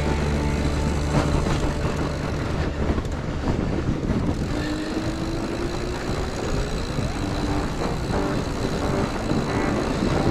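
Wide fat-bike tyres of a 2021 Giant Yukon 2 rolling over groomed, packed snow, a steady rushing noise mixed with wind on the chest-mounted camera's microphone.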